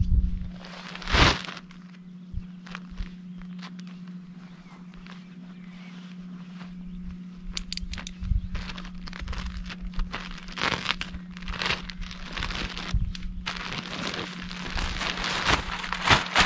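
Plastic sack of garden soil crinkling and rustling as it is handled and emptied onto the ground, the rustling growing busier in the second half. A single thud about a second in, and a steady low hum underneath.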